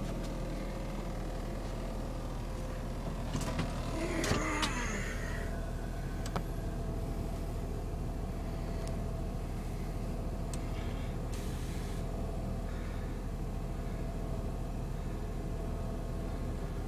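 Cummins six-cylinder diesel engine of a 2013 Stallion 42-passenger bus idling steadily with the bus standing still. There is a brief rattle with a falling squeak about four seconds in.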